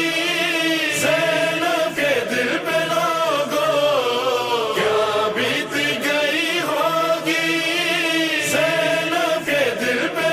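A solo male voice singing a noha, a mournful Shia lament, in long, wavering held notes without instruments.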